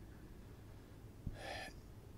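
Faint room hum, then about a second and a half in a man draws a short breath close to the microphone. It follows a soft low thump, the kind made by handling the microphone.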